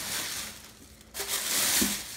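Plastic bag and paper wrapping rustling and crinkling as a wrapped pan is pulled from its box, dying down briefly near the middle and then a louder burst of crinkling in the second half.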